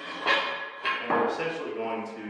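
Galvanized steel pipe and a steel barbell knocking and clinking together as they are handled, with a few sharp metallic clanks.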